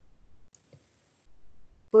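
A lull with faint low background noise on the line and a small, sharp click about half a second in.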